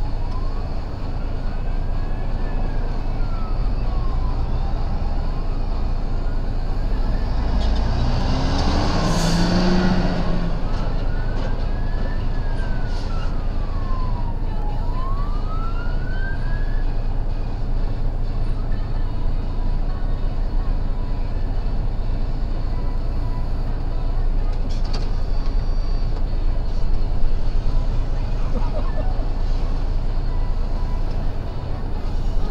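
An emergency vehicle siren wails slowly up and down, about one rise and fall every four to five seconds, over a steady rumble of road traffic, and stops about seventeen seconds in. A heavy vehicle passes close by about nine to ten seconds in, the loudest moment, its engine note sliding as it goes.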